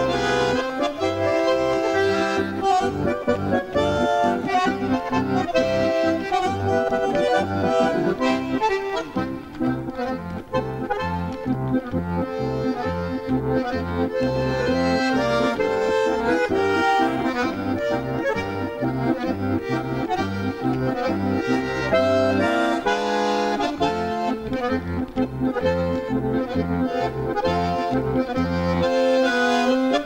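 Button accordion playing a lively traditional folk tune: a melody over alternating bass and chord accompaniment.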